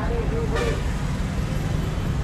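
A steady low rumble under the general background noise of a busy street market, with no clear single event standing out.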